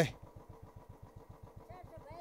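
Motorcycle engine idling at a standstill, a quick, even beat of firing pulses, with a faint voice near the end.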